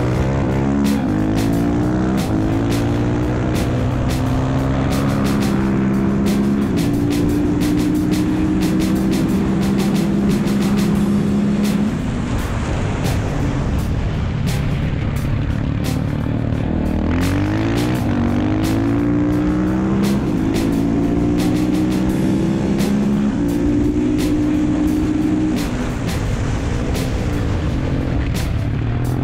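Husqvarna supermoto's single-cylinder engine at racing speed, heard from on board: it revs up through the gears, the pitch climbing and then dropping at each shift. It eases off about twelve seconds in, then pulls hard again.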